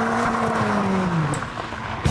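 Ford Racing Puma's 1.7-litre four-cylinder engine as the car accelerates away. Its note rises briefly, then falls and fades as the car moves off.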